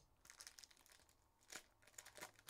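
Faint crinkling and crackling of packaging being handled as a sealed trading card box is opened, with a sharper crackle about one and a half seconds in.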